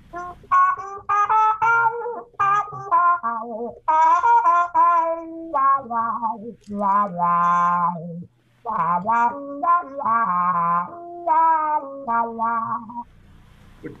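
Trumpet played through a Huber Mellowa mute, a 3D-printed remake of the vintage Robinson/Humes & Berg Mellowa. It plays a muted jazz phrase of quick runs and a few held notes, with a short break a little past the middle, and stops about a second before the end.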